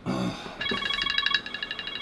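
A throat clear, then a phone ringing: an electronic ringtone, a high tone held briefly and then broken into rapid pulses.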